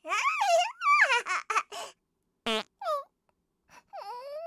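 A cartoon baby's high-pitched giggling and laughing for about two seconds, followed by two short, sudden sounds a little after the middle.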